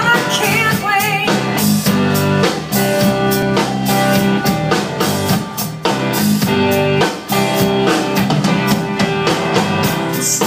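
Live rock band playing an instrumental intro: electric guitar over a steady drum-kit beat.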